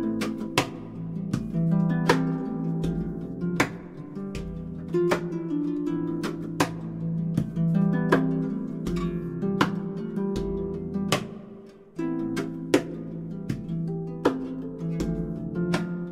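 Concert harp played in a percussive style: plucked melody and low bass notes ringing together, punctuated by sharp knocks every half second or so. The playing thins out briefly about twelve seconds in, then resumes.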